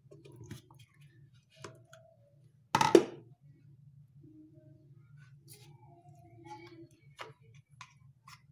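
Plastic gelatin mold being worked loose by hand: faint creaks and clicks, then one loud sharp pop a little under three seconds in as the mold's centre piece comes free of the set gelatin. A low steady hum runs underneath.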